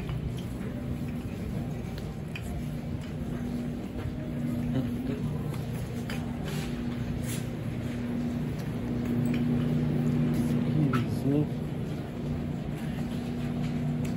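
Supermarket ambience: a steady low electrical hum from the store's refrigerated cases and lighting, with faint voices and small clicks.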